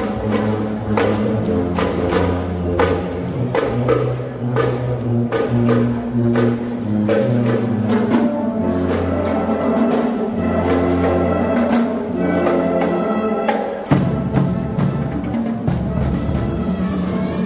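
School marching band (banda marcial) playing: brass holds sustained chords over steady beats from bass and tenor drums and other percussion. About two seconds before the end comes a loud accent, after which the sound turns brighter and fuller.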